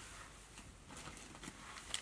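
Faint handling noise at a fly-tying vise: a few soft ticks and rustles of fingers on the fly and its materials over quiet room tone, with a slightly sharper click near the end.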